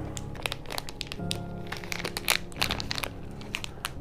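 Plastic candy wrappers and paper crinkling in irregular crackles as packets are handled and lifted out of a box, over background music with held tones that comes in about a second in.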